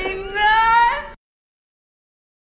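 A drawn-out cat meow that glides upward in pitch and cuts off suddenly about a second in, where the track ends.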